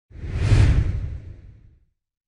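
A whoosh sound effect with a deep low rumble under it, swelling quickly to a peak about half a second in and then fading away: the sting for an animated company logo reveal.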